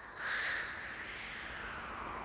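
Harsh cawing calls over a low hum as the opening of a thrash metal album's intro track fades in. A loud call of about half a second comes just after the start, then a steadier, harsh sustained tone.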